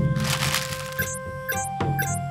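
A sudden crackling sound effect at the very start, fading within about half a second. It is followed by cartoon background music: held notes over a low steady drone, with bright chime-like notes about every half second.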